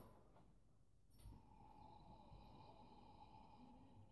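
Near silence: room tone, with only a faint brief rustle about a second in.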